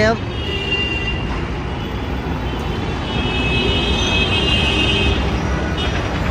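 Street traffic noise: a steady low rumble of engines, with a brief high tone just after the start and a longer high-pitched tone from about three to five seconds in.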